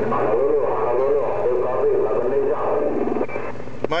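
An incoming voice transmission heard from the speaker of an HR2510 10-meter transceiver: a thin, hissy radio voice whose words are not clear. It ends about three and a half seconds in. It is a distant station's call, which the operator copies loud and clear.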